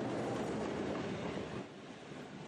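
Passenger train passing close by: the locomotive and its carriages rolling over the rails in a steady wheel noise, which eases slightly near the end.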